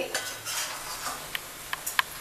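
A spatula stirring and scraping moist grated carrot halwa around a metal kadhai, with a few light clicks of the spatula against the pan in the second second.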